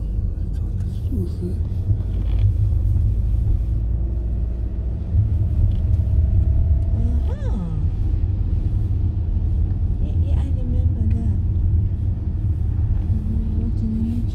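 Car driving on a wet town street, heard from inside the cabin: a steady low rumble of engine and road noise.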